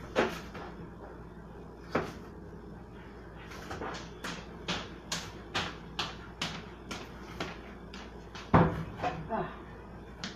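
Kitchen cupboard doors and things being handled: a knock at the start and another about two seconds in, a run of light clicks about two a second, and a loud thump near the end.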